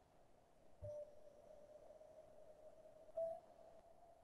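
Near silence: room tone with a faint steady hum, broken by two soft, brief sounds, one about a second in and one near the end.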